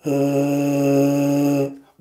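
A tuba mouthpiece buzzed on its own, away from the instrument: the lips vibrating into it as one steady, held note with a bright, buzzy tone that stops shortly before two seconds in. This bare lip buzz is the vibration that the tuba itself focuses and amplifies into its tone.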